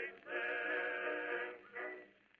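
Closing song: a male voice with accompaniment holding two long sung notes, with a short break between them.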